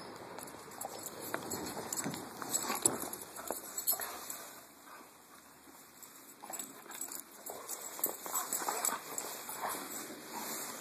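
A yellow Labrador puppy scuffling and trotting in snow with a stick in its mouth: irregular crunching paw steps and the stick scraping and snapping against the snow. It is busiest in the first few seconds and again near the end, with a quieter spell in the middle.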